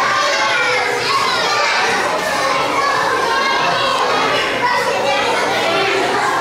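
Many children's voices talking and calling out at once, a steady, continuous babble of a crowd of children.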